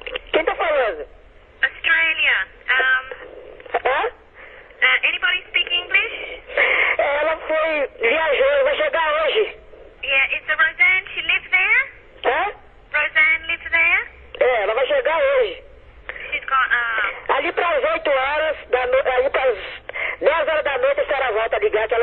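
Two people talking over a telephone line, their voices thin and narrow, in a back-and-forth of mixed English and Portuguese.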